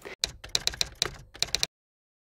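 Typing sound effect: a quick run of a dozen or so sharp key clicks over about a second and a half, cutting off suddenly.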